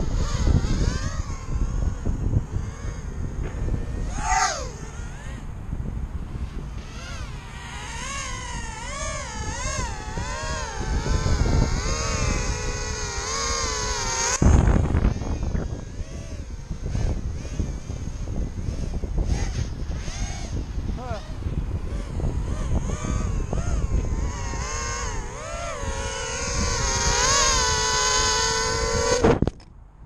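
Brushless motors of a micro 113 mm quadcopter (Racerstar 1306 motors on a 3S battery) whining, the pitch wavering up and down with the throttle, with one sharp swoop in pitch about four seconds in. A loud thump comes about halfway through, and the whine cuts off abruptly near the end.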